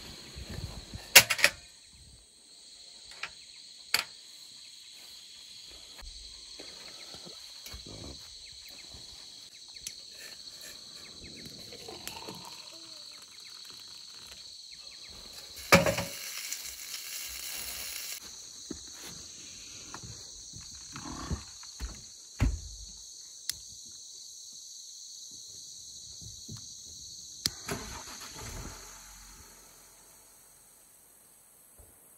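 Camp-kitchen handling sounds: scattered metallic clinks and knocks of a stainless steel pot and mug at a portable gas stove, with about two seconds of hot water poured into a steel mug midway, over a steady high hiss.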